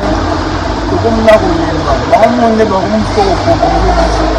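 A man talking steadily over a constant low background rumble.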